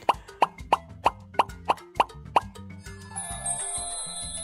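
A quick string of cartoon 'plop' sound effects, about three a second, over light children's background music, giving way about three seconds in to a high, sparkling shimmer effect.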